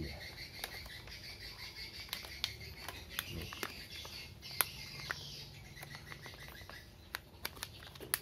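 Plastic packaging crinkling and crackling in irregular little snaps as a foil-like anti-static pouch is pulled out of a plastic courier mailer and handled.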